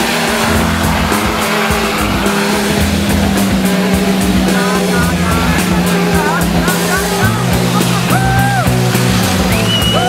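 Off-road 4x4's engine running hard as the vehicle ploughs through deep mud, mixed with music. Two held high notes sound near the end.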